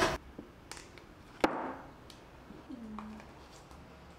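A ceramic plate set down on a table with a single sharp knock and a short ring about one and a half seconds in. A brief low tone that falls slightly in pitch follows a little after the middle.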